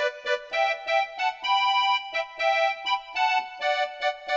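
Electronic keyboard played with the right hand alone: a single melody line in the upper-middle register, quick short notes in a bouncing vallenato rhythm, with one longer held note near the middle.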